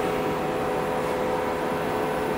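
Steady machine hum with several steady whining tones over a hiss, holding an even level throughout.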